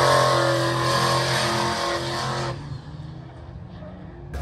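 Ford Mustang engine held at high, steady revs during a burnout, with the rear tyres spinning in the smoke. About two and a half seconds in the sound drops away sharply and stays much quieter.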